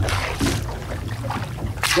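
Wind on the microphone and water sloshing along a small boat's hull, with a short hiss near the end.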